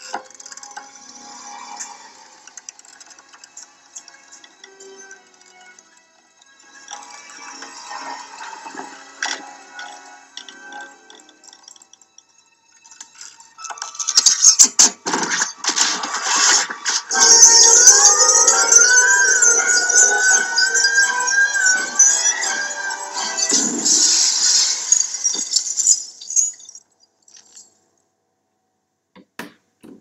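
A glass chandelier crashing down: a loud run of sharp impacts with glass shattering and clinking, starting about halfway through and stopping a few seconds before the end.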